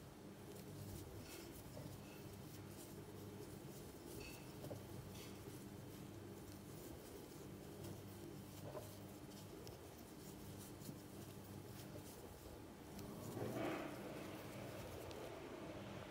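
Faint rustling and light scratching of a crochet hook working cotton yarn into stitches, over a low steady hum. One slightly louder soft sound comes near the end.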